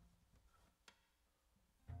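Near silence: room tone, with one faint click just under a second in.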